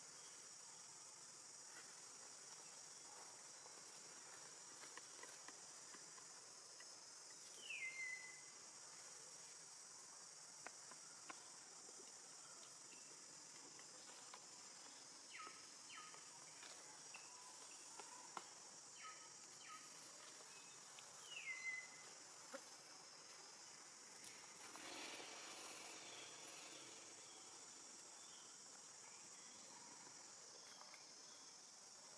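Faint, steady high-pitched drone of insects, with a short falling chirp about eight seconds in and again about twenty-one seconds in.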